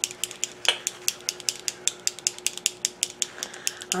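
A LipSense liquid lip colour tube being shaken by hand, making a fast, even rattle of about eight clicks a second over a faint steady hum. The shaking mixes the colour particles back through the alcohol they are suspended in before application.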